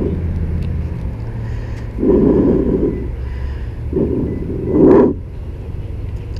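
Low, steady rumble of a motor vehicle running nearby, with three louder noisy swells about two, four and five seconds in.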